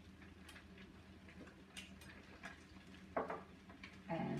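A hand-turned salt mill grinding salt over frying eggs: a scattering of light, irregular ticks. A brief, louder sound about three seconds in.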